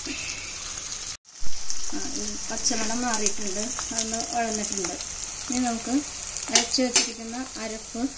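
Shallots, green chillies and curry leaves sizzling in hot oil in a pot, stirred with a steel spoon that scrapes against the pot, with a voice in the background. The sound breaks off briefly a little over a second in.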